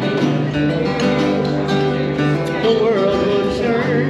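Acoustic guitar strummed live, with a voice singing a melody over the chords.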